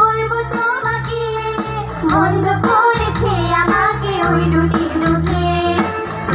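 Women singing a melody with vibrato into microphones, backed by a live band of electric guitars and keyboard with a steady bass line.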